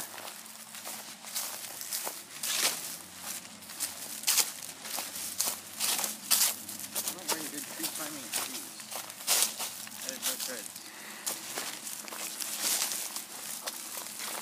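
Footsteps crunching through dry grass and leaf litter and pushing through brush: an irregular run of crackles and rustles from leaves and twigs underfoot and against the body.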